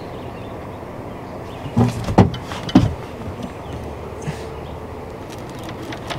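Steady wash of water and wind around a small fishing boat. A few heavy knocks and bumps on the deck come about two to three seconds in, as someone moves across the boat to a rod with a fish on.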